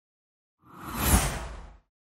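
A whoosh sound effect for an animated logo reveal, with a deep rumble under it, swelling to a peak about a second in and fading out quickly.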